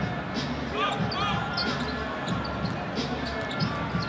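A basketball being dribbled on a hardwood court, with sneakers squeaking a few times in the first second or so, over a steady arena crowd murmur.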